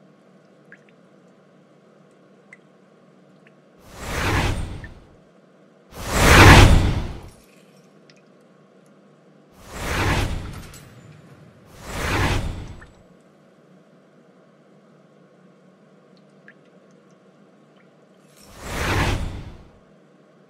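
Five whoosh sound effects, each swelling and fading over about a second, like swung blows: four in the first half, the second one the loudest, and a last one near the end.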